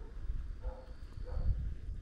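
Two short animal calls about half a second apart, over a steady low wind rumble on the microphone.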